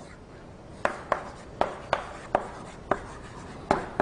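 Chalk writing on a blackboard: about seven sharp, short taps and strokes at an uneven pace, starting about a second in.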